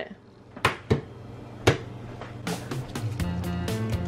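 An egg knocked sharply against a frying pan, three clicks as it is cracked, then background music with a steady beat comes in about halfway through.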